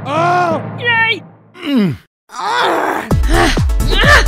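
Comedy dub sounds: a drawn-out groan-like voice, a short pitched squeak and a falling slide, then a brief rush of noise. About three seconds in, music with a heavy bass beat and sliding notes starts.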